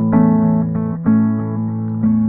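Acoustic guitar strumming two chords, about a second apart, each left to ring.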